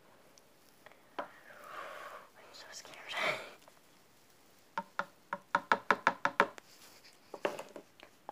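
A small glitter container tapped repeatedly at the neck of a plastic water bottle to shake glitter in: a quick run of light taps, about six a second, a little past halfway, with a few more taps near the end. Before it, a soft whispered sound.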